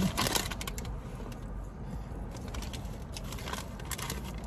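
Rustling and crackling of a fast-food paper bag and wrapper as chicken nuggets are taken out, loudest at the very start, with soft chewing and scattered faint crackles over a low steady rumble inside a parked car.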